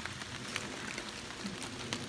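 Steady light rain falling in woodland, an even hiss with faint scattered drop ticks.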